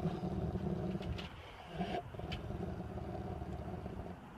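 A dog growling in a low, rough, drawn-out rumble while being brushed, breaking off briefly twice.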